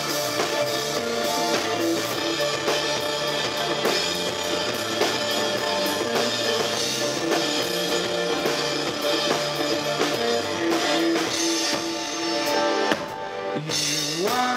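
Live indie rock band playing an instrumental passage: electric guitars over a drum kit with a steady beat. The sound thins out briefly near the end.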